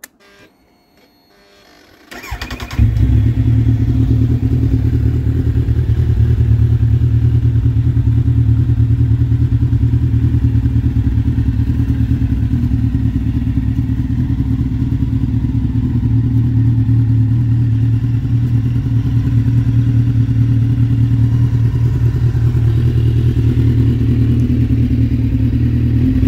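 2003 Kawasaki Z1000's 953 cc inline-four with a Delkevic aftermarket exhaust, started on the electric starter about two seconds in: a brief crank, then it catches and settles into a loud, steady, even idle.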